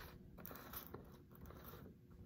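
Faint scraping and soft clicks of a large plastic black pepper container and its snap cap being handled on a counter.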